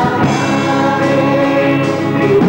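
A choir singing together, holding long, steady notes.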